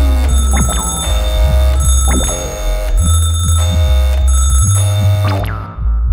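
Homemade electronic music made on synthesizers: a steady deep bass under a high-pitched figure that repeats about once a second. A falling synth glide ends about half a second in, and the high part drops out briefly just before the end.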